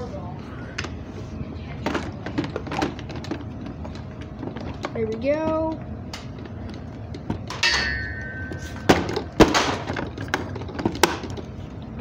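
Hard plastic knocks, clicks and thuds as the solution tank is fitted onto a Hoover SteamVac carpet cleaner, the loudest knocks coming about nine seconds in. A short bit of voice sounds about five seconds in.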